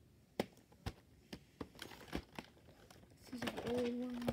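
A plastic VHS case being handled: a series of sharp clicks and taps with some crinkling. A voice starts about three seconds in.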